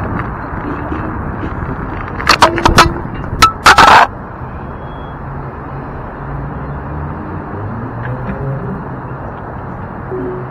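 Wind and road noise from a moving electric scooter, broken about two seconds in by a quick run of loud sharp knocks and clatters lasting under two seconds. After it, a quieter, steady rumble.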